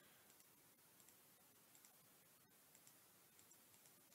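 Near silence with a few faint computer mouse clicks as points are placed while tracing an outline.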